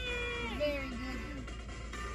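A woman's long, high, delighted "aww" that drops in pitch about half a second in and trails off into a lower wavering hum, over the marching band's music playing from the video.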